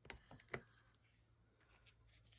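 Near silence, with a few faint small clicks and taps from a glue stick and paper being handled in the first second. A low steady hum follows.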